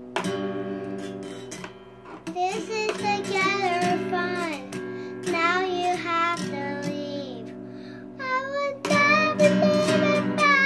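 A young girl singing while strumming an acoustic guitar. A strum opens it, and her singing comes in about two seconds in.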